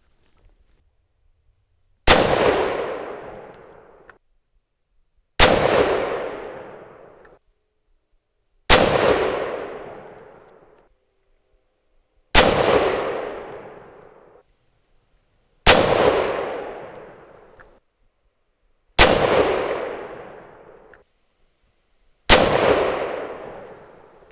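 Seven .257 Roberts rifle shots from a sporterized Arisaka Type 30 bolt-action carbine, fired about three seconds apart. Each loud crack is followed by an echo that dies away over about two seconds.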